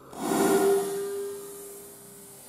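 Whitetail doe blowing: one loud, forceful snort of air with a held whistling tone, fading over about two seconds. It is the deer's alarm blow, the sign that she has sensed danger.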